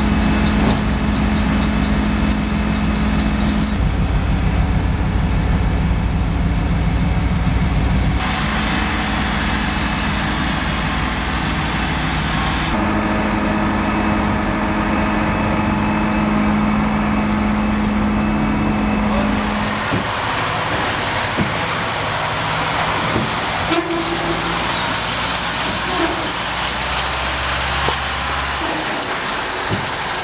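Heavy diesel machinery running steadily with a low hum, the sound shifting abruptly every few seconds; in the later part the engine sound thins and a few sharp metal clanks are heard.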